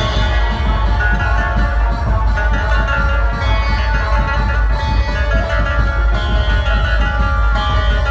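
Dhumal band playing a tune: large barrel drums beat a fast, dense rhythm under a held, note-by-note melody line.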